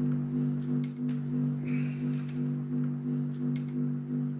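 Low, steady hum of several stacked tones, throbbing about three times a second, with a few faint clicks over it. It is a speaker playback of a field recording filtered of its other sounds, believed to have captured the mysterious 'hum' heard on the mountain.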